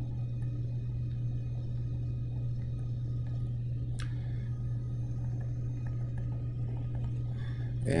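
Steady low background hum with no speech, and a single sharp click about four seconds in.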